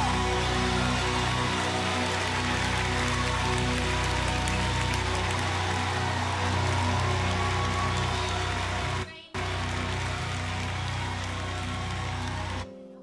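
Live worship-band music: strummed acoustic guitar and keyboard over sustained tones, with a hissing wash throughout. The sound cuts out for a split second about nine seconds in.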